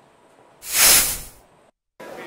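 A short whoosh, a hiss-like rush of noise that swells and fades in under a second: a transition sound effect for a white flash between news segments. It is followed by a moment of dead silence.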